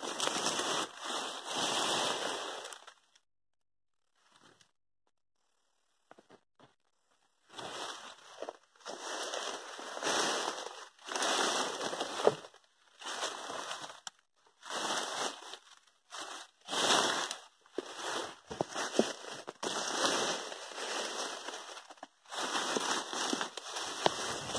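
Leaves and stems rustling and crackling as they brush against the camera pushed through dense undergrowth, in irregular bursts of under a second. There is a stretch of near silence about three seconds in.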